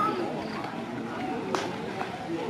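Background chatter of several people talking, with one short sharp click about one and a half seconds in.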